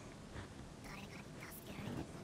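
Faint speech at low level, the anime episode's dialogue playing quietly in the background.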